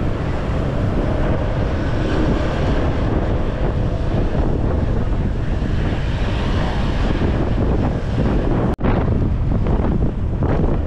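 Heavy wind buffeting on the camera microphone while riding pillion on a moving motorbike, with road and engine noise underneath. The sound drops out for an instant near the end.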